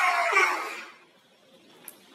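A man's high-pitched, drawn-out scream, fading out about a second in, then quiet room tone with one faint click near the end.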